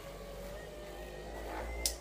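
A small electric car buffer with a soft pad runs against the arm with a steady low hum and a faint whine. Near the end there is a click, and the hum stops.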